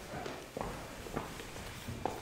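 Footsteps: a few separate, faint steps about two-thirds of a second apart as a person walks up to a lectern.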